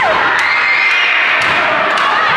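Crowd of children shouting and cheering courtside at a basketball game, with a few sharp thuds of the ball bouncing on the court.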